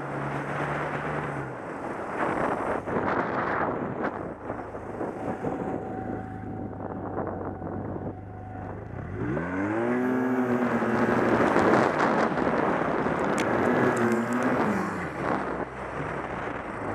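1100 turbo snowmobile engine running at part throttle, then revving up sharply about nine seconds in and held at high revs for several seconds before easing off near the end.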